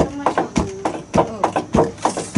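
Foot-operated wooden rice pounder: the pestle beam drops into a stone mortar of rice in regular thuds, a little under two a second.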